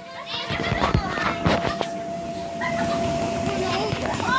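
Children shouting and squealing as they play on an inflatable bounce house, with a few thumps about a second in and a steady hum underneath from the inflatable's air blower.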